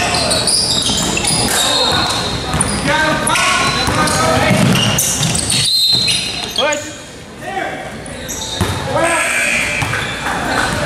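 Basketball game sounds in a large gym: a ball bouncing on a hardwood court, with players and spectators calling out, all echoing in the hall. There is a brief break about six seconds in.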